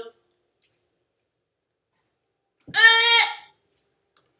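A person's loud, high-pitched, wavering cry of disgust, under a second long, about three seconds in. It is the reaction to a jelly bean that tastes like dog food.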